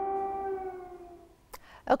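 A single drawn-out wailing tone with clear overtones, sagging slightly in pitch and fading out about a second and a half in, followed by a breath and the first words of a woman's speech at the very end.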